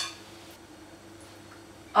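A single sharp clink of kitchenware at the start, as a steel pot and spoon are worked over a blender's jar, then quiet room tone with a faint steady hum.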